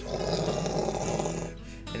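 A man imitating a rocket launch with his voice: a rough, hissing rush of breath about a second and a half long that stops abruptly.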